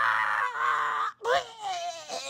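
A man's voice wailing and crying out, breaking off about a second in, then starting again with a rising cry.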